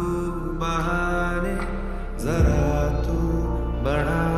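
Slow, tender Bollywood film song in a stretch without sung words: sustained notes over a steady low bass, moving to a new chord a little after two seconds in. The track is mixed as '8D audio', panned around the listener.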